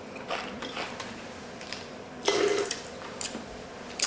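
Faint mouth sounds of a wine taster working a sip of red wine in his mouth: a few small clicks and smacks, then a short breathy exhale a little over two seconds in.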